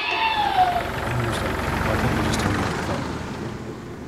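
A motor vehicle running, its rumble building to about two seconds in and then fading away.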